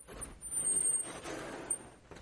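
Vertically sliding chalkboard panel being hauled along its track by hand: a rumbling scrape lasting about a second and a half, with a thin high squeal over it.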